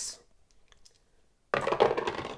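Dice tumbling down a dice tower and clattering into its tray, a short rattle about one and a half seconds in that lasts under a second.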